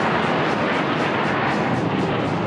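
Single-engine Mirage 2000-5 fighter jets flying past in a formation of four: steady, loud rushing jet noise.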